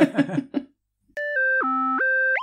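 Short electronic synthesizer sting of steady, beep-like notes starting about a second in, stepping down in pitch over three notes. A laugh trails off just before it.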